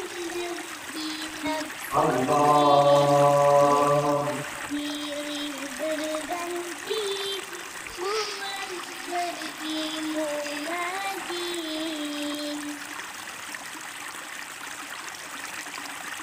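A slow melody in a single voice, moving in held steps, with one loud sustained note about two seconds in that lasts some two seconds; a faint steady hiss lies underneath.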